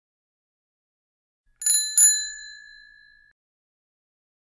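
Two rings of a bicycle bell, half a second apart, about a second and a half in, the second ring dying away over about a second.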